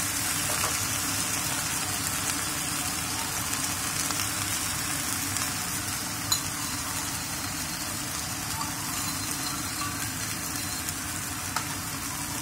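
Beef slices and Chinese broccoli (kailan) sizzling steadily in a nonstick pan over high heat, with one light tap about halfway through.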